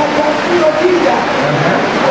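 Several voices talking and calling out over one another, loud, over a dense, noisy din.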